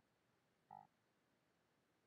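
Near silence: room tone, broken once about three-quarters of a second in by a short voiced hesitation sound from the man, like a brief "uh".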